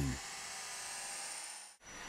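High-pitched whine of a small high-speed vacuum motor, the Dyson Digital Motor V6, running steadily with an airy hiss and edging slightly up in pitch, then cutting off near the end.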